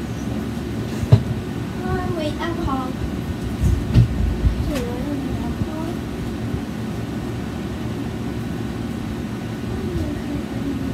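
Steady low rumbling background hum, with faint indistinct voices a few seconds in and a couple of sharp knocks, about a second in and again near four seconds.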